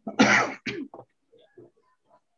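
A person clearing their throat over a video call: one harsh burst followed by two shorter ones.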